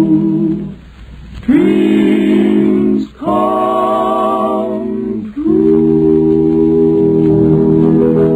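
Male barbershop quartet singing in close four-part harmony, a series of long held chords with short breaks between them, the last chord starting about five seconds in and held to the close of the song.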